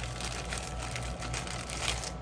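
Clear plastic bag rustling and crinkling softly as sticker sheets are handled and slid out of it, with a few small ticks.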